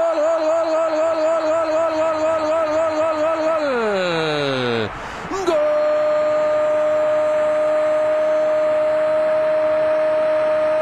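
Spanish TV football commentator's long drawn-out shout of "gol" for a goal just scored, held on one pitch with a slight wobble for a few seconds, falling away in pitch, then taken up again after a breath and held steady to the end. A stadium crowd cheers underneath.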